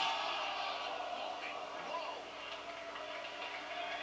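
Wrestling broadcast audio heard through a television speaker: a steady arena crowd hubbub with indistinct voices.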